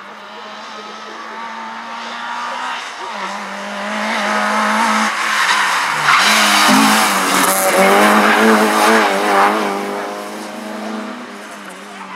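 Opel Astra GSi rally car's engine revving hard as it approaches and passes, its pitch rising and falling several times through gear changes and lifts. It is loudest about six to nine seconds in, then fades as the car moves away.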